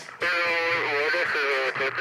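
A song with a sung voice and guitar starts abruptly about a quarter second in, the voice held on long wavering notes.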